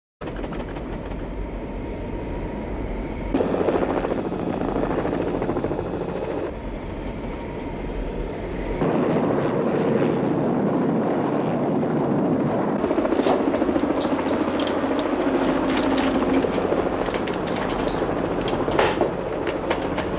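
Helicopter in flight: steady rotor and engine noise mixed with rushing wind. The sound changes abruptly about three, six and nine seconds in.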